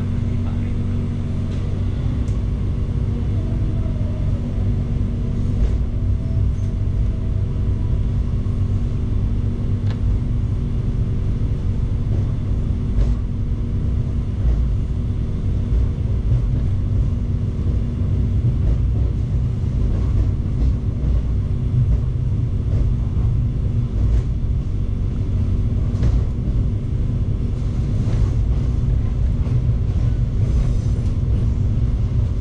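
Steady low rumble and hum of a passenger train running, heard inside the coach as it pulls out of the station, with occasional faint clicks from the wheels over rail joints and points.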